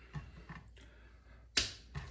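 Faint handling of raw beef on a wooden cutting board, then a single sharp knock about one and a half seconds in as the trimmed-off scrap of steak is tossed into a bowl.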